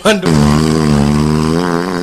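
A man's voice holding one long, steady note for about two seconds, drawn out like a sung or chanted call.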